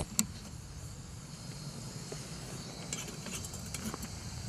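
Portable gas camping stove being lit: a sharp click and a second one just after, then the burner running with a steady rushing hiss. A few light clicks near the end as the kettle goes on.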